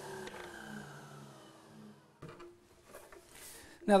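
Compound mitre saw spinning down after a crosscut through an oak dowel: a faint whine that slowly falls in pitch and fades over about two seconds. A brief faint noise follows about two seconds in.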